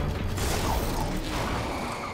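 Cartoon sound effect of clicking, ratcheting machinery, with a rush of noise about half a second in, taking over from the closing music.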